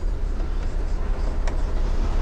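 Steady low rumble in the cab of a Mercedes-Benz Sprinter-based camper van, with the engine idling and the AC fan running. A dashboard button gives a faint click about one and a half seconds in.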